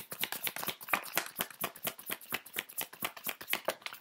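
A deck of oracle cards being shuffled in the hands: a fast, even run of card clicks, about ten a second.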